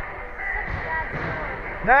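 Indoor ice hockey rink ambience during play: faint, distant voices of players and spectators over a steady low arena rumble.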